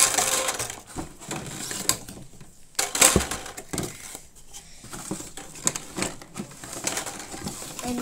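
Hollow blue plastic pipes from a toy basketball hoop kit knocking and clattering against each other and on a laminate floor as they are handled and laid down, an irregular run of sharp knocks, the loudest right at the start and about three seconds in.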